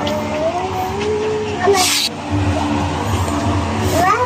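A motor engine running, its pitch slowly rising and falling, with a brief sharp hiss about two seconds in.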